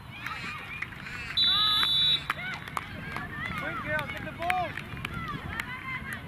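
Referee's whistle blown once in a short, steady blast about a second and a half in, the loudest sound here, over players' voices shouting and calling across the pitch.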